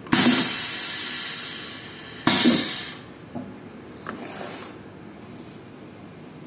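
Pneumatic piston paste filler (Doersup PPF-500) cycling: two sudden hisses of compressed air venting from its air cylinder. The first trails off over about two seconds; the second comes about two seconds later and is shorter. A couple of faint clicks follow.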